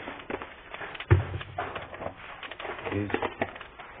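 Panch phoron seeds spluttering in hot oil in a wok: a rapid, irregular crackle of small pops and clicks.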